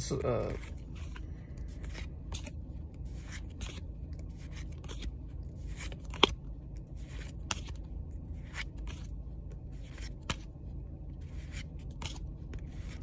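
Pokémon trading cards being slid one at a time off a freshly opened pack held in the hand, making short papery swishes about once a second, with one sharper click about six seconds in.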